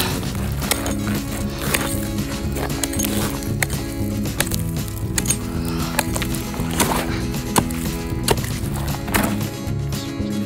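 Metal ice chisel striking and chopping through lake ice to open a fishing hole: a steady run of sharp blows, one every second or less, over background music.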